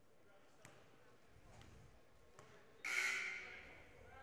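Faint background of a basketball gymnasium with a few light knocks, then about three seconds in a sudden hissing burst of noise that fades away over about a second.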